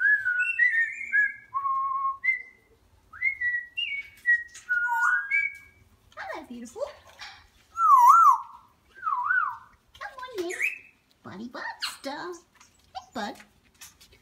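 African grey parrot whistling: a string of short, clear notes sliding up and down for the first few seconds, then a loud warbling whistle a little past halfway, followed by more varied sweeping calls toward the end.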